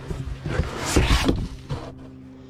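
Cardboard boxes being dragged and shoved aside: a run of scraping and crumpling, loudest about a second in, dying away near the end.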